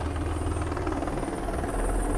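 Helicopter flying past: a steady low rotor drone with a fast chop in it.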